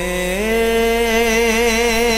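A solo singer holding one long note of a Punjabi devotional song. The note steps up in pitch about half a second in, then carries on with a wavering vibrato.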